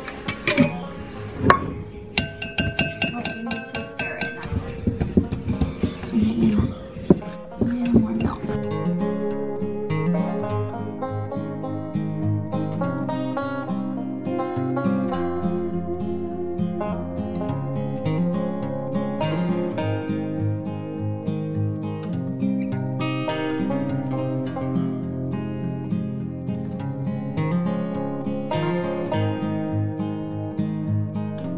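Clinking and knocking of a utensil stirring in a glass mixing bowl for about the first eight seconds. Acoustic guitar background music then carries on for the rest.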